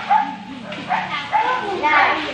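Small children's voices, chattering with several short high-pitched calls.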